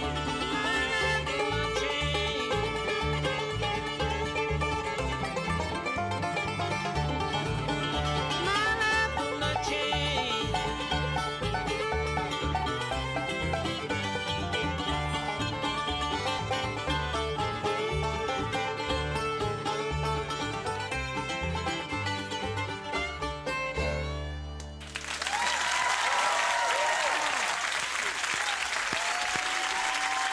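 Bluegrass band playing fiddle, banjo, mandolin, acoustic guitar and upright bass, closing the song on a held final note about 24 seconds in. Studio audience applause follows to the end.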